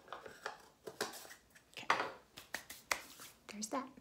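Makeup containers and tools being handled and set down on a counter: an irregular run of light clicks, taps and clatter.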